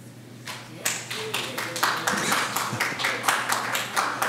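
An audience in a council chamber stirring after a vote: a run of scattered clapping mixed with murmured voices and movement, starting about a second in after a quiet moment.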